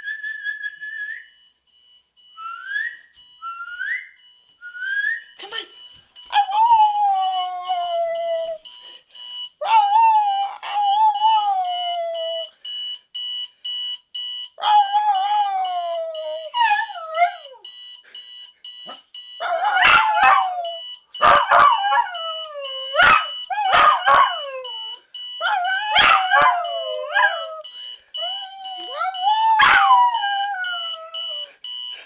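A dog howls along with a beeping alarm clock. It starts with a few short rising whines, then gives long falling howls, louder and closer together in the second half. The alarm beeps in a fast, steady pattern throughout, and several sharp clicks come in the last third.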